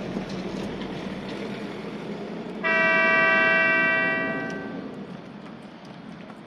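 A light-rail tram's horn sounds once, about two and a half seconds in: a sudden steady chord of several tones held for about a second and a half, then fading away over the next second, over a steady low hum.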